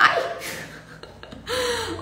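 A woman's startled exclamation, "ai!", at a small mishap, fading into breath, then a short voiced sound near the end as she starts to laugh.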